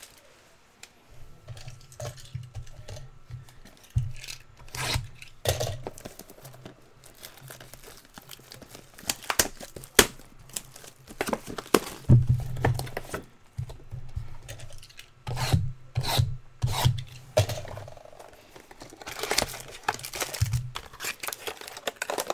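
Hands opening and handling a sealed box of trading cards: wrapper tearing and crinkling, cardboard rubbing and scraping, with irregular sharp clicks and knocks.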